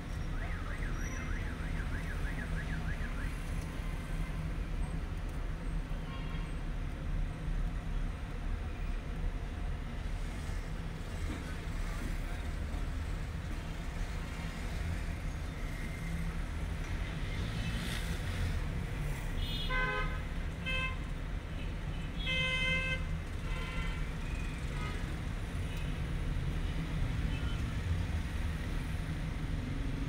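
Steady low rumble of road traffic and a car engine, heard from inside a stationary car. Two-thirds of the way through come two quick clusters of short vehicle-horn honks.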